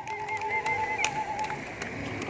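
Electronic keyboard sustaining a single note with a wavering vibrato, which fades out about a second and a half in. A few light clicks sound over it.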